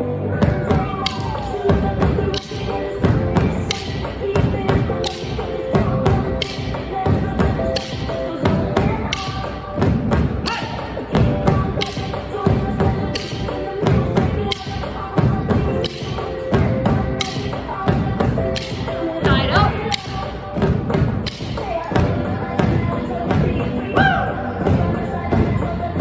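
Drumsticks beating on inflated exercise balls, a group striking together in a steady rhythm of about two strikes a second, over an upbeat pop song.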